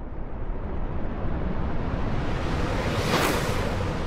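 Title-sequence sound effect: a deep, steady rumble with a whoosh that swells to a peak about three seconds in and then fades.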